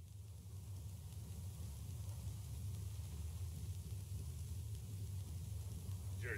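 A steady low drone with a faint hiss over it, slowly getting louder.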